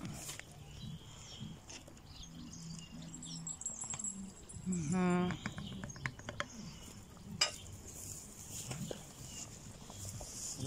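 Wooden spoon stirring thick boiling pea soup in a cast-iron cauldron, with soft bubbling and scattered light knocks and clinks. A short voiced sound stands out about five seconds in, and a sharp knock comes a couple of seconds later.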